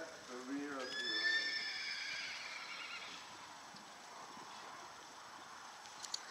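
A horse whinnying: one long high-pitched call starting about a second in and fading out over about two seconds.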